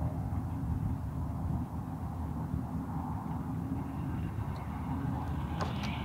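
Wind buffeting the microphone: a steady low rumble with no other distinct sound.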